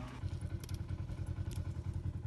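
A vehicle engine idling with a steady, low, rhythmic throb, with a few short clicks in the middle.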